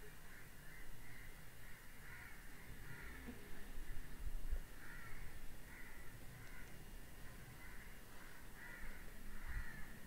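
Faint bird calls repeated in a steady run, about every two-thirds of a second.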